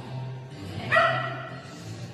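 A dog gives one sharp bark about a second in, over background music.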